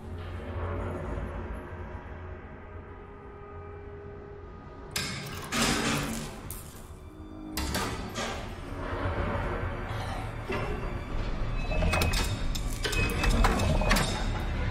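Film soundtrack of tense music with a low drone, then from about five seconds in a series of loud, sudden metal clanks and knocks over the music, growing denser near the end.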